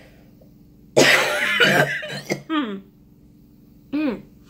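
A woman coughing: a sudden loud cough about a second in, followed by a few shorter falling coughs that trail off, and a brief falling vocal sound near the end. Her throat and nose have suddenly become irritated.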